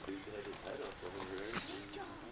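Low, hushed talking among people keeping quiet so as not to scare off a chipmunk.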